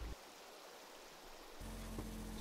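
Faint, steady hiss of a shallow stream's running water. About a second and a half in, a low steady hum comes in.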